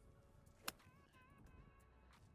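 A single short, crisp click of a 50-degree wedge striking a golf ball, about two-thirds of a second in, otherwise near silence.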